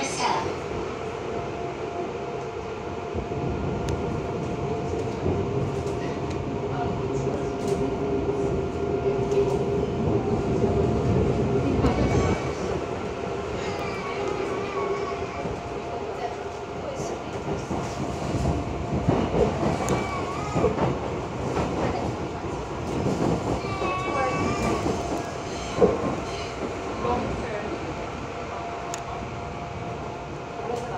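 Seoul Metro Line 2 electric subway train running, heard from inside the car: a continuous rumble of wheels on rail under a steady hum. A single sharp knock comes late on.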